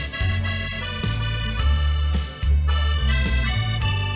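Button accordion playing a boléro melody in long held notes, backed by a band with a bass line below.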